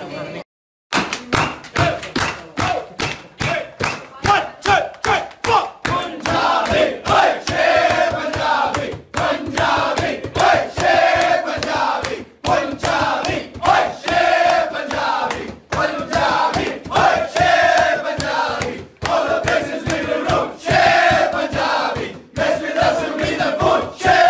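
A group of men in a huddle chanting a team song in unison over a fast, steady beat of about four strikes a second. The chant starts about a second in, after a brief gap, and turns into sustained sung lines from about a third of the way through.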